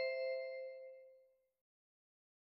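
Two-note descending electronic chime, a higher note followed straight away by a lower one that rings and fades out over about a second and a half: the signal that introduces the next question of a listening test.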